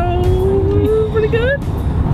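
Steady car cabin road and engine noise under one long held sung note that wavers and rises near its end, about one and a half seconds in.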